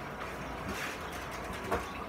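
Quiet kitchen handling noise: a couple of light knocks and rattles as seasoning containers are taken from a cupboard and handled at the counter.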